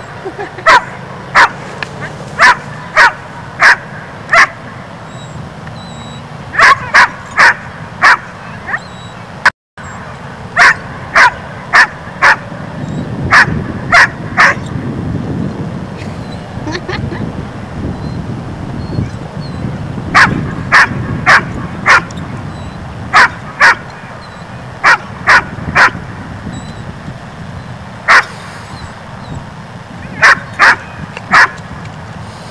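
A dog barking repeatedly in runs of three to seven barks, about two a second, with pauses of a second or more between runs. The sound drops out completely for an instant about ten seconds in.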